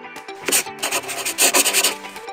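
Outro jingle of steady held notes, overlaid by a scratchy, rubbing sound effect that comes in a short burst about half a second in and again for a longer stretch from about a second in until near the end.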